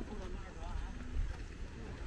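Wind buffeting the microphone as a steady low rumble, with faint chatter of people's voices in the background.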